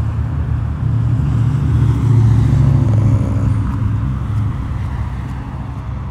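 A steady low rumble that grows louder about two seconds in and eases off toward the end.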